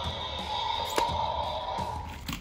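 Mattel Destroy 'N Devour Indominus Rex toy set off by its back button for the rolling action: a steady whirring tone lasting almost two seconds, with a sharp click about a second in.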